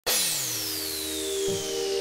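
Electronic intro sting: a synthesizer sweep with a high tone gliding steadily downward and a low tone dropping, over a held synth chord that shifts about a second and a half in.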